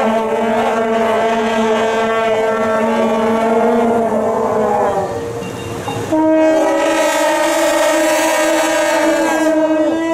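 Loud, long-held horn tones sounding several pitches at once. One chord holds for about five seconds, dips briefly, then a second chord on a different pitch holds for about four seconds.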